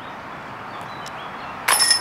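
A disc golf putt hitting the hanging chains of a metal basket, a sudden metallic clang with ringing chains as the disc drops into the basket near the end.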